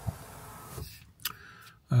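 Hyundai Tucson's electric sunroof motor running as the sunroof closes, then cutting off abruptly a little under halfway in. A short click follows.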